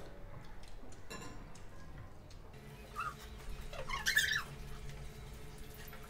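Short high-pitched mouth sounds from people eating, the loudest about four seconds in, over a low steady hum.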